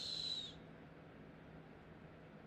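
A drawn-out, whistling "s" from a man's voice, a high steady hiss with a whistle in it, falling slightly and cutting off about half a second in. Then only faint room tone with a low steady hum.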